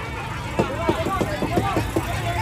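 Children's voices shouting short calls again and again at a football match, over crowd chatter and a low steady rumble.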